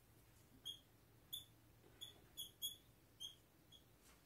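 Dry-erase marker squeaking on a whiteboard as an equation is written: about seven short, faint, high squeaks spread irregularly over the few seconds, with near silence between them.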